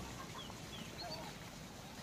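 A quiet pause with a few faint, short bird calls near the middle.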